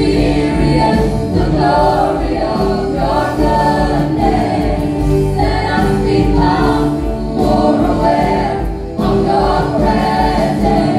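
A gospel praise team of several vocalists singing a worship song together into microphones, backed by a live band with held keyboard chords and a steady bass line.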